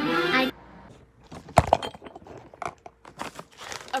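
A voice line cuts off about half a second in. Then comes handling noise: a sharp thump about one and a half seconds in, with scattered clicks and rustles around it.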